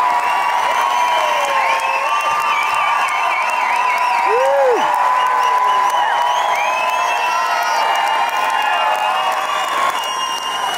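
Theater audience cheering and applauding after a song, with whoops, shouts and whistles over steady clapping.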